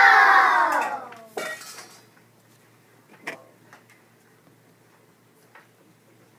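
A group of children shouting a drawn-out "No!" together, fading out within the first second. Then a short clatter about a second and a half in and a single sharp knock a couple of seconds later, as the plates held by two young performers are set down on the floor.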